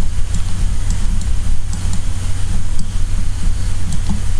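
A steady low rumble, with a few faint, scattered clicks of a computer mouse.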